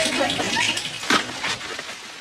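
Studio audience laughter and murmur dying away, with a sharp click about a second in.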